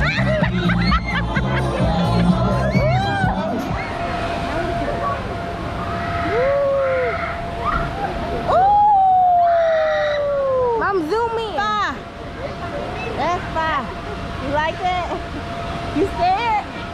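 Outdoor water-park crowd: many voices with short rising and falling shouts and calls, over music in the first few seconds.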